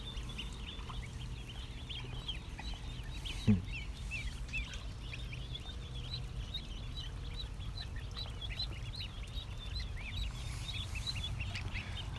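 A flock of ducklings and goslings peeping constantly, many short high chirps overlapping one another. One brief, louder, lower sound that falls in pitch comes about three and a half seconds in.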